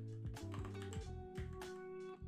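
Computer keyboard typing: a run of separate keystroke clicks over soft background lo-fi music with held notes.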